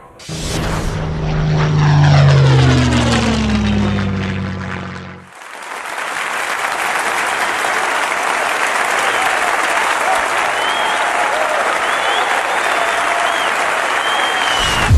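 A propeller aircraft engine runs loud, its pitch falling steadily for about five seconds before it cuts off abruptly. A large crowd then applauds for the rest, with a few high whistles.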